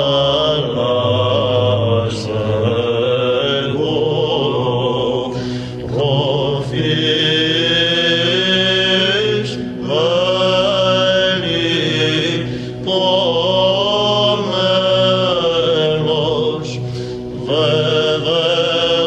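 Greek Orthodox Byzantine chant: a male chanter sings a slow, ornamented hymn melody over a steady low held drone (the ison). The melody breaks briefly for breath several times.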